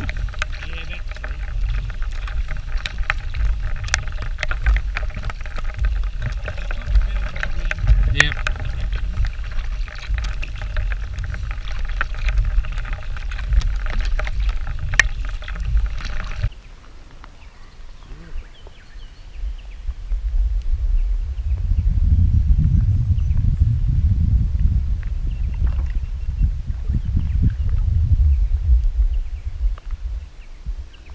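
Kayak paddling: paddle blades dipping and splashing in calm lake water, with scattered sharp ticks. About halfway through the sound drops off abruptly, and a low rumble follows for the last third.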